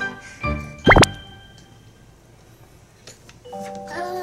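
Background music with a cartoon-style sound effect. A short low thump comes first, then a loud, quick upward-sliding 'bloop' about a second in. After a quiet stretch, the music returns near the end.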